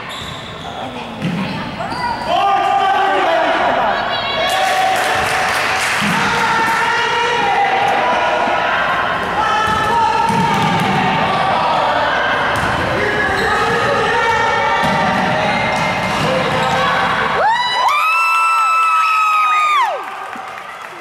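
Basketball game in a gym: the ball bouncing on the hardwood court, with shouting voices echoing in the hall. Near the end comes a long, steady, shrill tone lasting about two and a half seconds.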